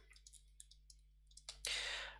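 Faint light clicks of a pen on a drawing tablet as a word is handwritten, then a loud breath in about a second and a half in.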